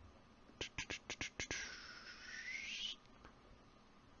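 A person making idle mouth sounds like beatboxing: a quick run of about seven clicks, then a drawn-out 'shh' hiss of over a second that dips and rises in pitch before cutting off.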